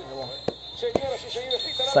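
A football match broadcast with a commentator's voice. Near the end comes a steady high whistle, the referee's whistle ending the first half.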